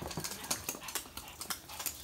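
Toy poodle's claws clicking on a hard, smooth floor as it runs: irregular light taps, several a second.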